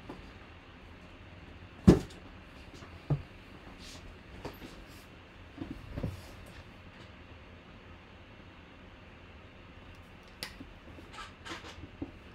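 Handling knocks as a cardboard product box is moved and set down on a tabletop: one sharp thump about two seconds in, a lighter knock a second later, a few soft bumps, then a cluster of light taps and clicks near the end.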